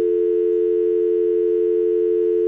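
Telephone dial tone: a steady, unbroken two-note hum that sounds once the call has been hung up.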